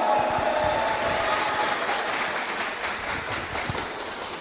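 Crowd applause after a player is announced, fading gradually.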